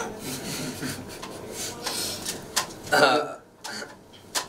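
Soft, breathy laughter from a few people, with a short voiced sound about three seconds in.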